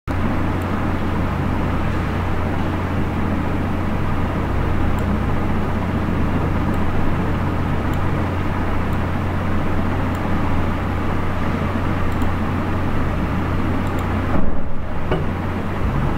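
Steady background noise with a strong low hum and a rushing hiss, with a few faint clicks scattered through and a brief louder bump shortly before the end.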